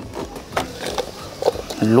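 Light clicks and rustling of hard plastic being handled: a spherical toy robot being worked out of its clear plastic blister packaging and its shell pulled apart into two halves.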